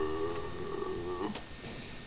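A person giving a long, low imitation of a cow's moo, the "low" of a big cow, held steady and ending a little over a second in.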